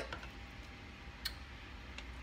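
Quiet kitchen room tone with a steady low hum and one light, sharp click about a second in.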